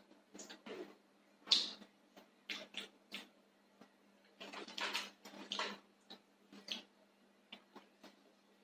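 Soft lip smacks and mouth noises of someone tasting gochujang chili paste: a handful of short separate sounds, the sharpest about one and a half seconds in.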